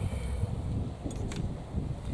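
Gusting wind buffeting the microphone: a continuous low rumble. A few brief scrapes from hands digging a planting hole in the soil sound over it.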